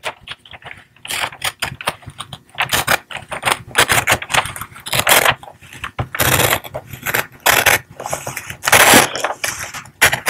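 Scissors cutting through a sheet of wrapping paper: a quick, uneven run of snips with the paper crinkling and rustling, the loudest about nine seconds in.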